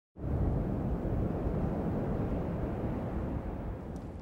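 Wind buffeting the microphone: a steady low rumble that starts abruptly out of silence a moment in.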